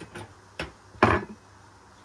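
Three sharp clicks and knocks from a kitchen knife and a plastic puto mould being handled over a metal wire cooling rack, the loudest about a second in.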